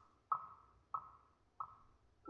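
A single high marimba note struck on its own three times, about every 0.65 seconds. Each stroke rings briefly and fades before the next.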